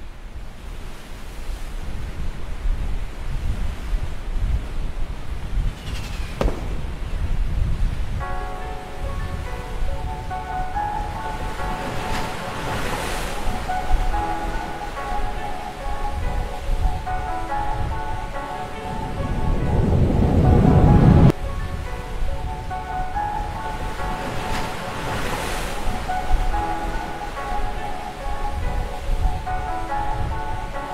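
Instrumental music intro: a low rumbling bed with slow swelling whooshes, joined by sustained synth notes about eight seconds in. The biggest swell cuts off abruptly a little after twenty seconds. No vocals yet.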